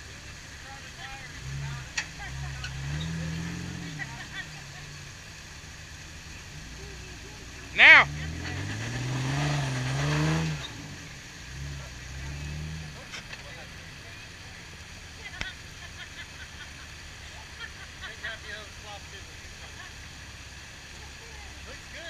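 A Jeep's engine revving in bursts as it crawls up a rock ledge off-road, pitch climbing under load, with a stretch of tire and rock noise in the middle. A short loud shout rings out about eight seconds in.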